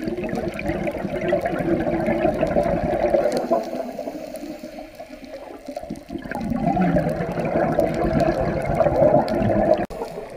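Scuba regulator exhaust bubbles from a diver's exhalations, heard underwater at the camera, in two long bubbling swells with a quieter lull about halfway through. The sound cuts off abruptly near the end.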